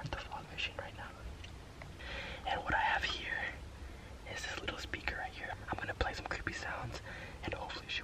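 A man whispering close to the microphone in short broken phrases.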